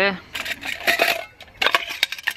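Nested metal pots and bowls of a Trangia camp stove set clinking and scraping against each other as they are lifted apart, a quick run of light clinks.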